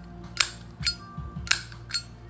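Flip-top metal lighter lid being clicked open and snapped shut: four sharp metallic clicks about half a second apart, each with a short ring.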